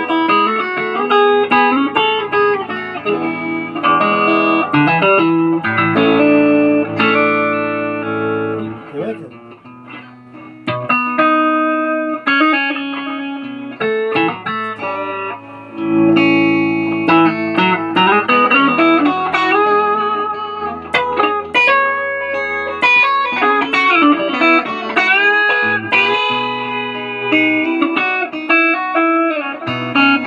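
Telecaster-style electric guitar with Nuclon magnetic pickups played with a clean tone: chords and singing single-note lines with string bends. The playing drops quieter about nine seconds in, then comes back strongly around sixteen seconds.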